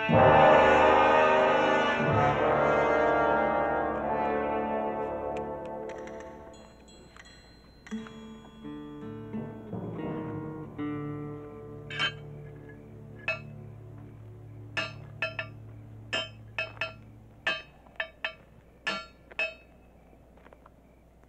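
Orchestral film music led by brass plays loudly at first and fades away over the first several seconds. In the second half, a blacksmith's hammer strikes heated iron on an anvil about a dozen times at uneven intervals, each blow sharp and ringing.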